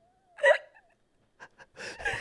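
Laughter from one person: a faint held vocal tone breaking into one short, hiccup-like burst about half a second in, then quiet breaths before laughter and talk start again near the end.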